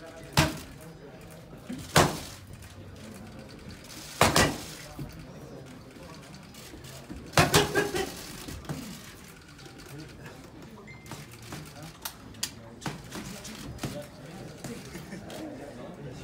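Boxing gloves striking focus mitts and a body protector with sharp, loud cracks. Single shots land about every two seconds, then a fast flurry of four or five comes about seven seconds in, followed by lighter, quicker taps.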